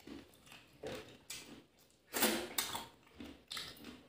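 Close-up eating sounds of a person eating rice and chicken curry by hand: wet chewing and mouth smacking with squelches of the hand in the curry, in a handful of irregular bursts, the loudest a little past the middle.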